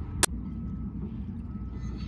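Steady low rumble of a small sailboat under way on an electric trolling motor, with a faint steady whine. One sharp click about a quarter of a second in.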